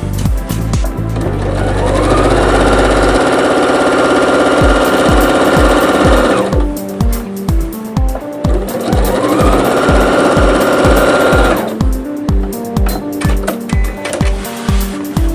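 Electric domestic sewing machine stitching in two runs, the first about five seconds long and the second about three. Each run starts with a rising whine as the motor speeds up, holds a steady pitch, then cuts off suddenly.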